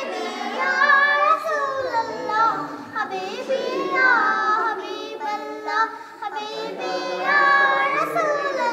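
Three young girls singing a Bengali gojol, an Islamic devotional song, together in gliding melodic phrases with short breaths between lines.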